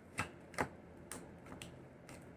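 Tarot cards being shuffled and handled in the hands: four short, sharp card clicks about half a second apart, the second the loudest.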